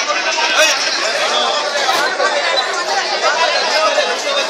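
Crowd chatter: many voices talking over one another without a break.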